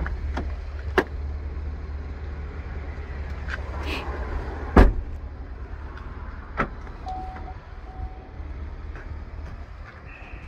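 A 2019 Chevy Blazer's door shutting with a heavy thump about five seconds in, then two short beeps as the power liftgate is opened from the key fob, its motor raising the gate.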